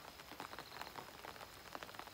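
Faint, irregular dripping and pattering of water as a wet gill net is pulled out of a pond, drops falling from the mesh onto the water.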